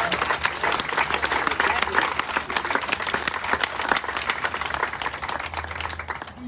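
Crowd applauding: dense, irregular clapping that thins out toward the end.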